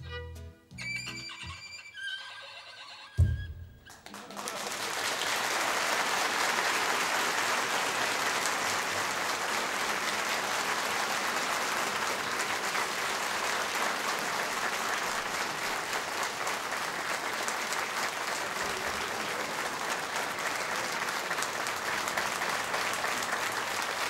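A fiddle tune with acoustic guitar and bass ends on a sharp final beat about three seconds in. A large audience then applauds steadily for the rest of the time.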